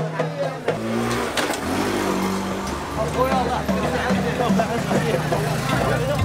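Busy street crowd: many people talking at once, with a motor engine running steadily close by from about a second in.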